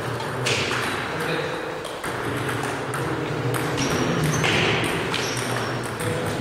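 Table tennis balls clicking off paddles and table in a rally, a series of sharp, irregular ticks in a large hall, with voices underneath.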